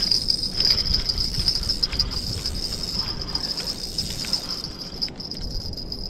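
Steady high-pitched insect drone, like a cricket or cicada, over a low rumbling noise.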